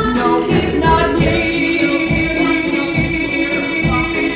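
A man and a woman singing a musical-theatre duet over keyboard and drums. From about a second in, a long note is held until near the end.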